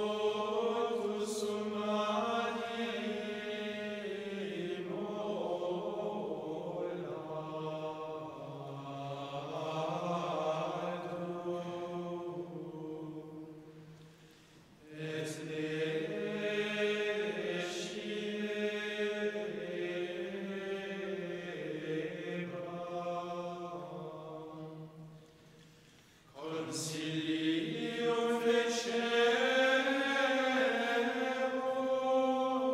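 A men's choir singing Latin plainchant in unison, long stretches of it held on a single reciting note. The singing breaks off briefly about halfway through and again near the end, then starts the next phrase.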